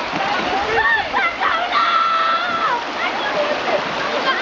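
Shallow river water rushing and splashing over rocks, with people's voices calling over it, one call held for about a second near the middle.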